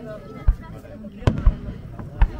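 Aerial firework shells bursting: one sharp bang about half a second in, then two more in quick succession past the middle.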